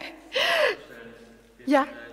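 A woman's short, breathy laugh, followed by a spoken "Ja".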